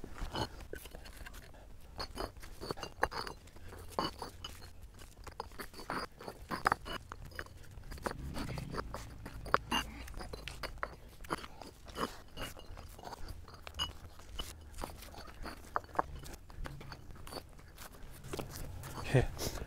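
Pavers being stacked one at a time onto a pile, each set down with a gritty clack and scrape, one or two a second at an irregular pace. They load a concrete test panel with weight for a bending test.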